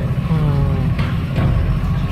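The motor of a small open sightseeing boat (a sappa boat) running steadily at low speed, a continuous low hum.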